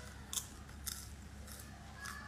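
Faint eating sounds: a few short crackles as food is pulled apart by hand and chewed, about one every half second.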